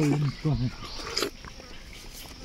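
Brief bursts of a man's voice in the first half-second or so, over a steady high-pitched drone of insects, with a few sharp clicks.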